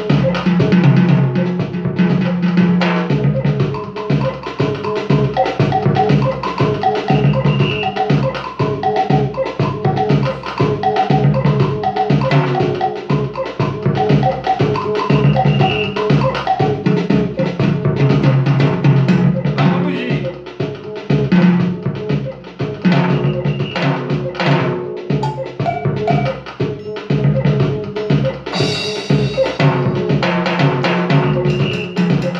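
Roland electronic hand-percussion pad played by hand, sounding a steady Brazilian samba rhythm of conga, bongo, timbale and cowbell sounds over a bass line, with a bright, hissing hit near the end.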